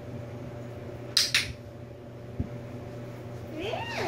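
A dog-training clicker pressed and released, giving two sharp clicks close together just over a second in. A soft thump follows about midway, and near the end come a few short high calls that rise and fall in pitch.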